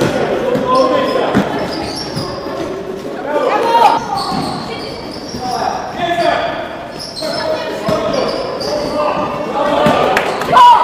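Live sound of an indoor basketball game: the ball bouncing on the hardwood court and players' voices, echoing in a large sports hall.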